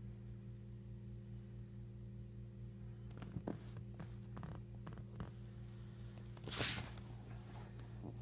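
Steady low electrical hum, with a few faint scuffs and one louder brief rustle about seven seconds in, as a hand spars with a cat's paws.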